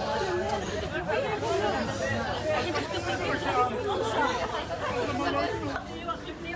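Several mourners' voices overlapping at once, an indistinct babble of talk with no single clear speaker.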